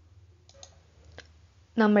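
A quiet pause with a faint low hum and two faint clicks, about half a second and a second in; speech resumes near the end.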